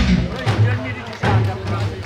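Two final unison strikes on Korean barrel drums (buk), about half a second and about a second and a half in, each leaving a low ringing boom, closing the drum performance as the backing music ends.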